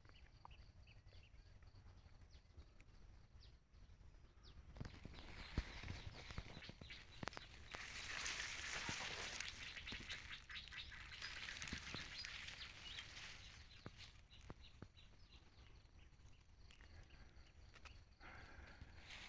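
Faint rustling and crackling of dry leaf litter and grass with scattered sharp clicks, loudest from about eight to thirteen seconds in, as someone moves close among the undergrowth.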